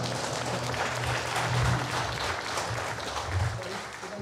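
Audience applauding after a song, a dense steady clapping that slowly dies down.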